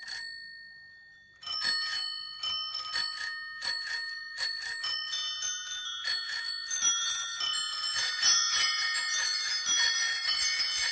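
Bicycle bells rung one after another within a music track: a few isolated rings, a short gap, then from about a second and a half in, a growing flurry of bells at several pitches layered into a dense ringing.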